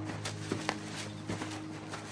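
Footfalls and rustling of a person running through undergrowth, a few irregular sharp steps. They sound over the tail of a held music chord that fades out in the first second.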